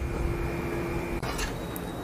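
Low, steady hiss of a bread omelette cooking in a frying pan over a low flame, with a faint hum that stops just over a second in, followed by a short burst of noise.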